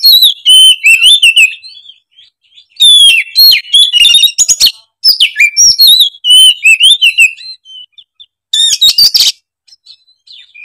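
Oriental magpie-robin (kacer) singing loud, rapidly varied whistled phrases in several bursts with short pauses between, an agitated full song showing off its range of phrases.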